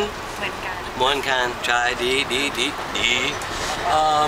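People talking, partly in Thai, over the steady rumble of a passenger train carriage.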